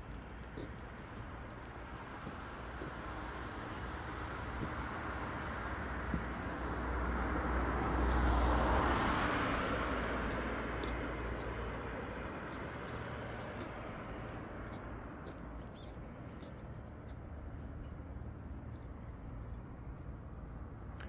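A car passing on the road: a steady hiss of tyres and engine rises slowly, peaks about eight seconds in, then fades away over several seconds.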